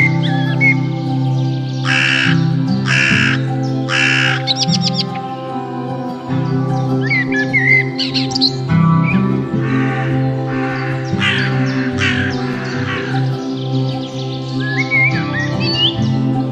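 Steady background music with sustained chords, over which a crow-like bird gives harsh caws: three about a second apart about two seconds in, then another run of four or five around the middle. Brief small-songbird chirps come in between.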